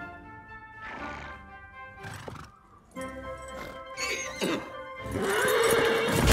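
Background film music, with a horse neighing loudly over it in the last two seconds or so.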